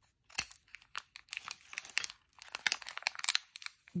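A small clear plastic packet and its white inner wrapping crinkling in the hands as they are pulled open, heard as a run of irregular crackles with a sharper click about half a second in.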